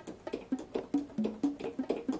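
Yamaha Piaggero NP-V80 digital keyboard playing its bongo drum voice: a quick series of short, pitched hand-drum hits, about four a second, at a few different pitches.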